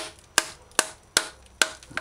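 A hammer striking the hard shell of a dry coconut held in the hand, cracking it into pieces. About five sharp, evenly spaced blows, two or three a second.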